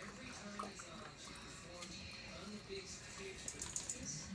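Husky puppy faintly lapping water from its bowl, then a few light clicks near the end as its claws tap the tile floor.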